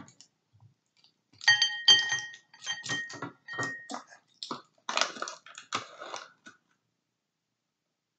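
Measuring tablespoon scooping flour and knocking against the bowl and flour container: a quick run of scrapes and knocks lasting several seconds. A ringing note sounds under the first knocks, and the knocks stop well before the end.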